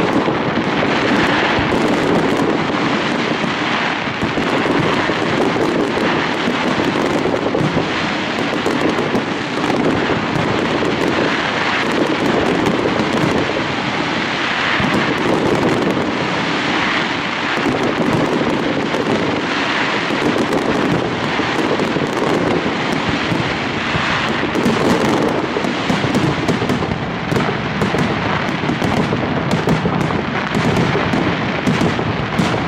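Mascletà aérea fireworks overhead: a loud, dense, unbroken rattle of crackling stars and small bangs that swells every few seconds, with sharper reports near the end.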